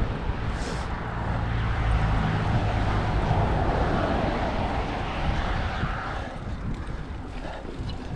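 Wind buffeting the microphone and the mountain bike rolling over a bumpy dirt singletrack, with a car driving past on the road alongside: its tyre noise swells through the middle and fades after about six seconds.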